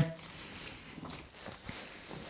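Faint rustle of a folded cardstock cut-out being handled as small cut triangles of paper are pulled free, with a couple of soft ticks.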